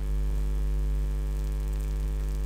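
Steady electrical mains hum: a low buzz with a ladder of evenly spaced overtones, unchanging in pitch and level.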